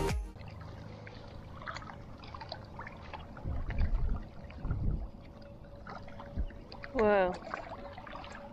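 Quiet lakeside ambience of faint water lapping and low rumbles of wind on the microphone, then a short falling vocal exclamation about seven seconds in as a fish strikes the lure.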